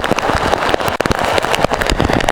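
Heavy rain in strong wind, with raindrops striking the camera and its microphone as rapid, irregular clicks over a steady rushing noise.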